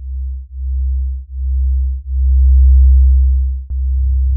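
Electronic music soundtrack made on an Elektron Model:Cycles groovebox, opening with a deep sine-like bass synth: four low sustained notes, the last and loudest one the longest, with a short click shortly before the end.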